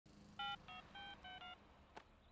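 Mobile phone keypad tones as a number is dialed: five short beeps in quick succession, the first the loudest.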